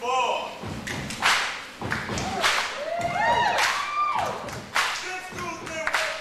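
Voices singing and calling out over music in a stage number, cut through by several loud thumps.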